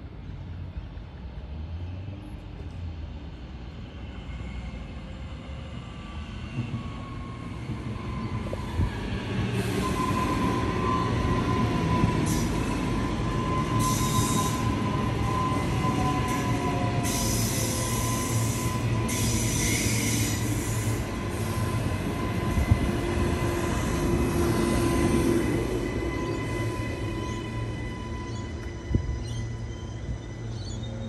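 Queensland Rail electric multiple-unit passenger train approaching and passing close by, rising from a distant rumble to a loud steady run with a held whine. Bursts of high-pitched wheel squeal come and go as the cars pass, then the sound eases as the train leaves.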